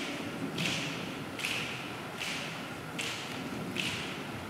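Choir keeping a steady beat with body percussion: five sharp, even strikes about 0.8 seconds apart, with the church's reverberation behind each. The beat sets the tempo for the gospel song that follows.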